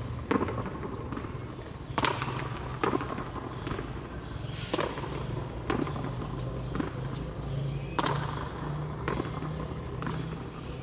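Frontón a mano rally: sharp smacks of the pelota struck by bare hands and hitting the front wall, every one to two seconds, each ringing briefly in the walled court. A steady low hum runs underneath.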